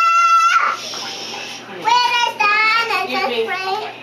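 A small child singing and vocalising into a toy microphone that amplifies her voice: a held high note that breaks off about half a second in, then after a short pause, wavering sung phrases that rise and fall.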